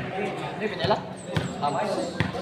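A ball knocking a few times on a concrete court, with a crowd's chatter and voices in the background.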